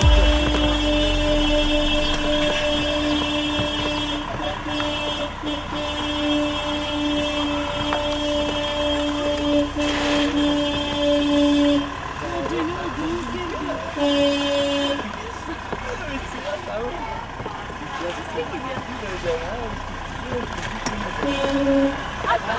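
A car horn held in one steady blast for about twelve seconds, then sounded again for about a second and once more briefly near the end. Car engines run slowly underneath.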